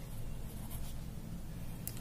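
Pen writing on paper: faint, light scratching strokes as a short word is written by hand.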